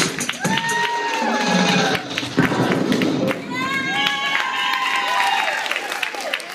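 Hip-hop dance music playing, fading out about two seconds in. Audience and children cheering follow, with long high-pitched "woo" shouts.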